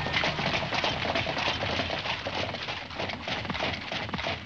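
Hoofbeats of a pair of horses pulling a carriage, with the rattle of its wooden spoked wheels and harness: a dense run of quick knocks and clatter.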